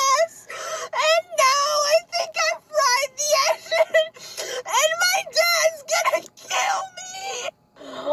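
A woman crying and wailing in a high-pitched voice, broken into many short sobs and cries with quick breaths between them.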